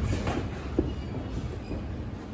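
Boxers' feet moving on the ring canvas: a steady low rumble from the ring floor with light shuffling, and a short shoe squeak just under a second in.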